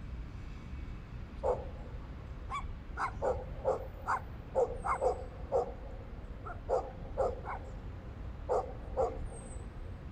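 A dog barking repeatedly in short, irregular runs, starting about one and a half seconds in, with a brief pause near eight seconds, over a low steady rumble.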